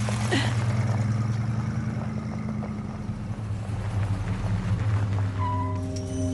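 An SUV's engine running with a steady low hum. Near the end, sustained musical tones come in over it.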